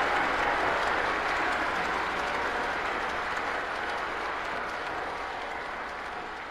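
Opera-house audience applauding after the aria, the applause steadily fading away.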